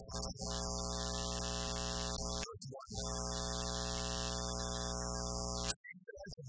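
A steady pitched hum with many overtones, held for about two seconds, breaking off briefly, then held again for nearly three seconds before cutting off abruptly near the end.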